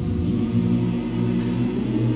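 Men's choir singing a slow traditional song. The voices move to a new chord right at the start and hold it, with the low bass voices strong.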